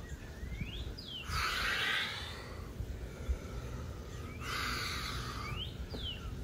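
A bird calling outdoors: short rising whistled notes that repeat about every three seconds. Between them come two slow, second-long rushes of breath from a person holding a stretch.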